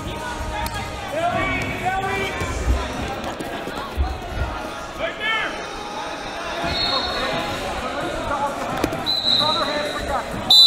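Wrestling hall ambience: indistinct shouting voices, dull thuds from bodies hitting the mat, and a brief high steady tone about two-thirds through, with another near the end.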